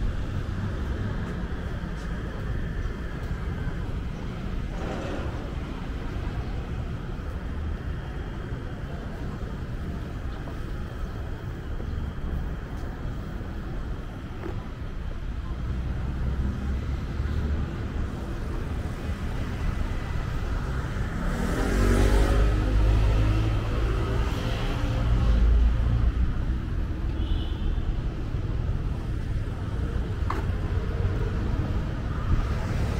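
City street traffic: a steady rumble of passing cars. About two-thirds of the way in, a louder vehicle goes by, its engine pitch rising as it accelerates.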